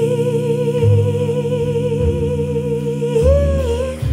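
A female singer holds one long wordless note with vibrato, bending up and back down near the end, over upright bass and a live band.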